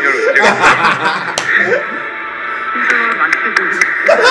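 Korean variety-show speech over background music, with men laughing along.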